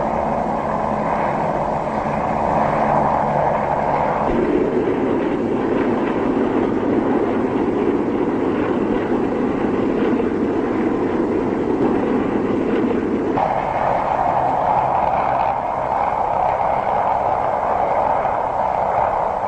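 Steady drone of a formation of propeller biplanes' engines on an old film soundtrack. The drone drops lower about four seconds in and returns to its higher pitch about two-thirds of the way through.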